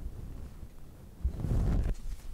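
Low rumbling handling noise from hands holding and shifting a thick hardcover book, louder for a moment near the end.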